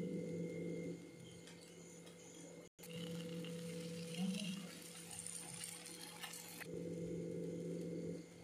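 Faint kitchen sounds of French toast being made: a bread slice handled in a bowl of milk mixture, then, from about three seconds in, bread slices sizzling faintly in ghee in a nonstick pan, with a steady low hum throughout.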